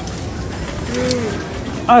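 A person makes one short voiced sound about halfway through, over steady supermarket background noise.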